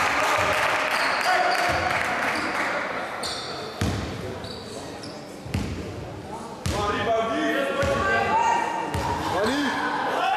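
Spectators' voices and cheering echoing in a sports hall, dying down over the first few seconds. Then a basketball bounces three times on the hall floor, about a second or two apart, and voices call out near the end.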